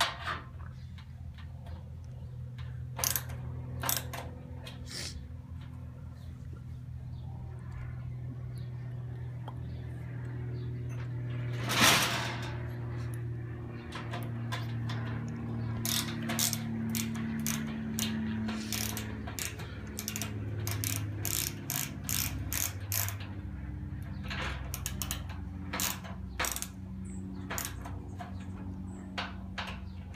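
Ratcheting screwdriver turning a screw into a barbecue grill's metal bracket: its pawl clicks in runs, a few at first and quick strings in the second half. A louder short scrape comes about twelve seconds in, over a steady low hum.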